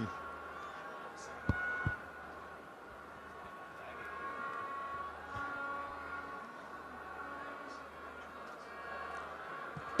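Faint stadium crowd murmur with indistinct distant voices, broken by two short knocks about a second and a half in.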